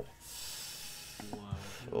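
A man's long, breathy exhale of amazement, then a quiet "wow" near the end.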